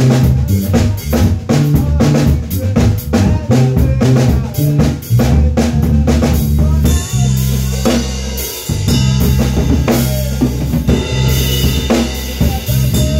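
A band rehearsing: a drum kit plays a busy, even beat with an electric bass guitar underneath. From about seven seconds in the drums open up into a cymbal wash over long held bass notes.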